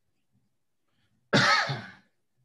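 A person coughing once: a sudden burst about a second in that dies away over about half a second.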